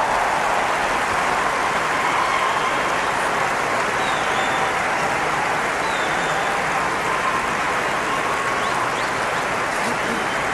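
Audience applauding steadily, with cheering voices and a few short whistles.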